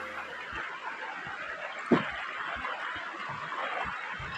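A backpack and its gear set down on river stones: one sharp clack about two seconds in and a few soft knocks, over a steady hiss.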